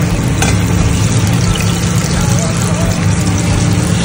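Small flour-dusted fish deep-frying in hot oil, a steady dense sizzle, stirred with a slotted metal spoon, over a steady low hum.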